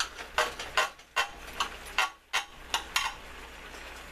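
Knife and fork clicking and scraping against a glass baking dish while slicing a roasted turkey breast: a string of separate sharp clicks over the first three seconds, then quieter.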